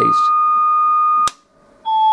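Steady sine test tone of about 1230 Hz from a tone generator, heard through a pair of GK IIIb speech scrambler units. About a second and a quarter in, a click cuts it off. After half a second of near silence the tone comes back steady and lower in pitch: one scrambler is now switched on and inverts the tone.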